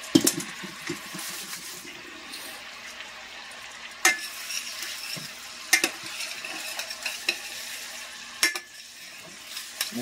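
Butter and garlic sizzling in a frying pan while being stirred, a steady hiss with a few sharp knocks of the utensil against the pan, near the start, about four and six seconds in, and past eight seconds.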